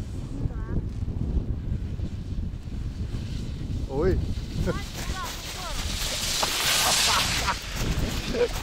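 Wind buffeting the microphone: a steady low rumble, with a louder hissing gust about six seconds in.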